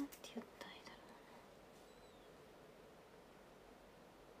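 A brief, faint whispered murmur with a few soft clicks in the first second, then near silence: room tone.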